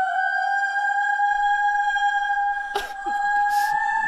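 Soundtrack music: one long, high, humming note held throughout, rising slowly in pitch, with a couple of short noisy hisses near the end.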